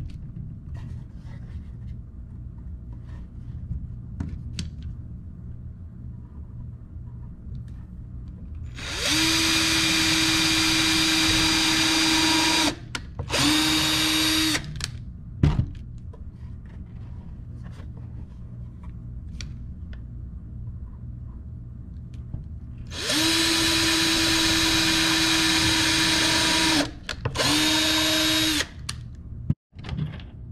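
Cordless drill whining at a steady pitch as it works into the wooden roof board of a bird feeder. It runs in two rounds, about nine and about twenty-three seconds in, each a run of about four seconds followed by a short burst of about a second. A sharp click comes about fifteen seconds in.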